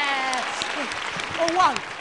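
A long drawn-out shouted 'yes' with slowly falling pitch trails off about half a second in, then a church congregation claps and calls out in short cries.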